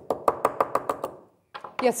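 A hammer striking a steel punch into a steel swage block in quick taps, about nine in the first second, each with a short metallic ring that dies away, pressing annealed copper petals into a curve.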